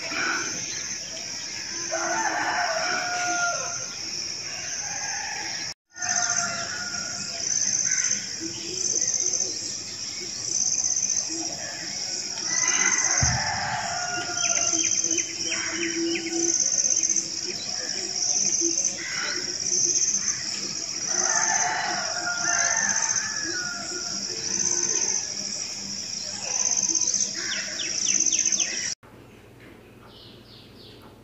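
Roosters crowing several times over a steady, evenly pulsing insect chorus, with small birds chirping in between. This is early-morning outdoor ambience.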